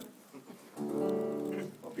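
An acoustic guitar chord sounded about a second in and left ringing for about a second, in an alternate tuning.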